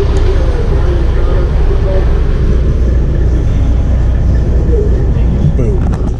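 A loud, steady low rumble with faint voices of people talking over it.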